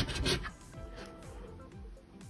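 A coin scratching the coating off a scratch-off lottery ticket in quick rasping strokes, which stop about half a second in. Quiet background music continues after.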